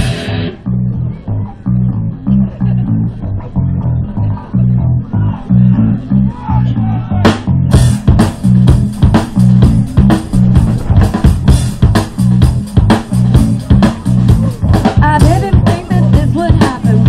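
Live rock band playing through a PA: a bass guitar line carries the first part with little else, then the drum kit and cymbals come in about seven seconds in alongside bass and electric guitar.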